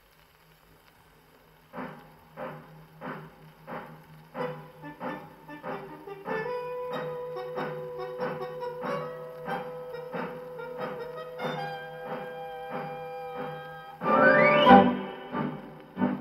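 A 78 rpm shellac dance-band record playing on an acoustic gramophone: after a moment of faint surface noise, a march introduction starts with a steady beat about one and a half times a second. Band melody lines come in about six seconds in, and a loud rising run sounds near the end.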